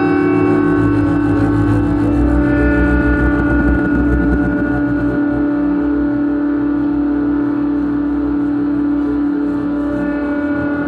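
Improvised ambient music from electronics, guitar and double bass: a steady held drone with sustained tones layered above it, and deep low notes that are strongest in the first half and thin out after about five seconds.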